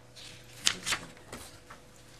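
A few short rustles of paper being handled, the sharpest about two thirds of a second and a second in.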